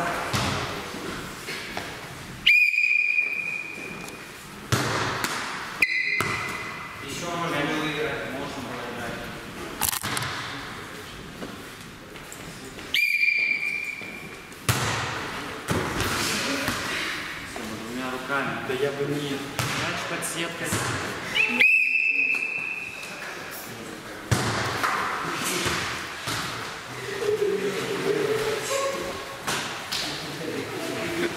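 A sports whistle blown four times in short single blasts, one high steady tone each, during a volleyball game in an echoing gym. Between the blasts come sharp knocks of the ball being hit and bouncing, and players' voices.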